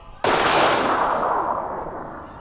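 A sudden crash of noise a moment in, fading away over about a second and a half.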